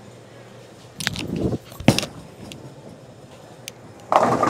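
A bowler's approach steps and slide from about a second in, then a sharp thud just before two seconds in as the Roto Grip Exotic Gem bowling ball lands on the wooden lane, followed by the ball rolling away down the lane.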